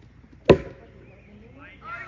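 One sharp, loud knock about half a second in, as a thrown game piece lands, with faint voices starting near the end.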